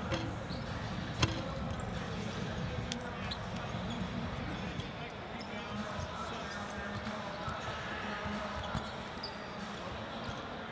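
Basketballs bouncing on a hardwood court during warm-ups, with a few sharp bangs, the loudest about a second in, over steady crowd chatter in a large arena.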